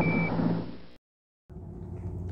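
Narrow-band Apollo mission radio audio fading out, opening with one short high beep typical of a Quindar tone. About a second in, it cuts to silence, then faint room tone.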